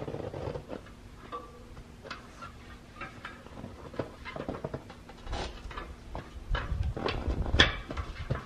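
A knobby rubber fat-bike tire being worked off its rim by hand: scattered rubbing, creaks and small knocks. The handling grows louder and heavier in the second half, with a sharp click near the end.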